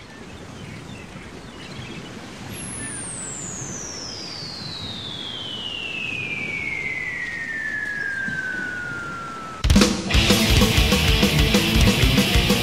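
Intro sound effects of a thrash metal track: a wash of noise slowly swells while a long whistle falls steadily in pitch for about seven seconds, like a falling bomb. Near the end, a sudden loud crack and the band crashes in with distorted guitars and fast drums.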